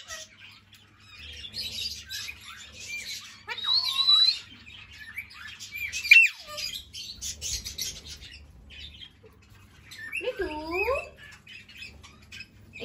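Pet Alexandrine parakeets squawking and screeching: several separate calls that glide up and down in pitch, about four, six and ten seconds in, with rasping, scratchy calls between them.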